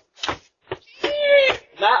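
A few short knocks of footsteps on wooden porch steps, then one high-pitched meow-like call held about half a second, its pitch dipping slightly. A voice starts speaking near the end.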